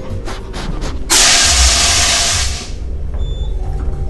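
A fire extinguisher is discharged in one loud hissing blast. It starts abruptly about a second in, lasts about a second and a half, then fades, as it puts out a burning hand.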